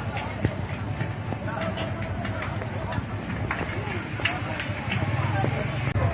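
Soundtrack of a roadside phone video: a vehicle engine running low and steady, with distant voices of onlookers and scattered sharp claps that sound like people clapping.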